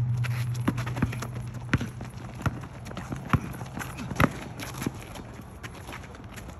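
Basketball thudding on an outdoor asphalt court amid players' running footsteps: a run of irregular sharp thuds, the loudest about four seconds in. A low hum fades out over the first few seconds.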